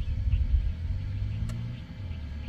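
A low, uneven rumble that settles into a steadier low hum in the second half.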